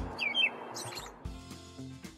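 A few short, high bird chirps in the first second, then soft background music begins.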